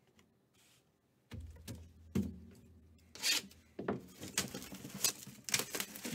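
Hands handling trading cards and packaging on a tabletop: rubbing and shuffling with a string of light clicks and taps. These begin after about a second of near silence.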